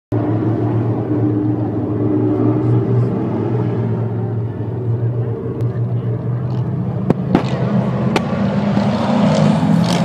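Street stock race cars running laps on a dirt oval, their engines making a steady drone together, with a few sharp clicks about seven to eight seconds in.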